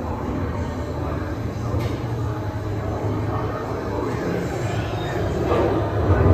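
Steady rolling rumble and clatter of a dark-ride vehicle system, like a train running on a track: the Doom Buggy ride cars moving along their track.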